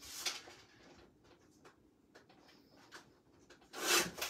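Quiet handling of cardstock and tools on a scoring board: a few faint taps and clicks, then a louder sliding rustle of paper near the end.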